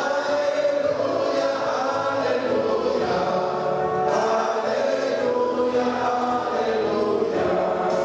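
A congregation of many voices singing a worship song together, holding long sung notes at a steady volume.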